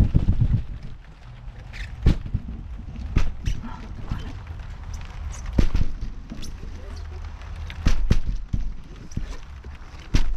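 Part-filled plastic water bottles landing on a trampoline mat: several dull thuds at irregular intervals, over a low rumble from the mat.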